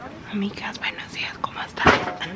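A woman whispering softly at close range, with a short, loud burst of noise near the end.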